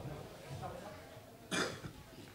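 A single short cough about one and a half seconds in, over faint murmuring voices in the hall.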